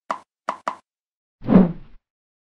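Logo-animation sound effects: three short pops in quick succession, then a louder whoosh that sweeps downward in pitch about a second and a half in.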